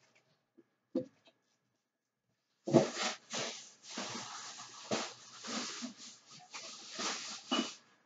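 Thin plastic grocery bags rustling and crinkling as they are carried in and handled, starting about three seconds in after a near-silent stretch broken by a brief knock.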